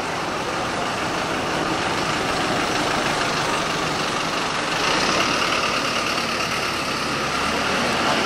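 Steady city street noise led by a motor vehicle's running engine, with a deeper engine rumble added from about five seconds in until near the end.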